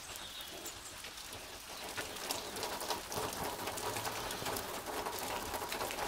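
Steady rain falling on nearby surfaces: an even hiss scattered with many small drop ticks.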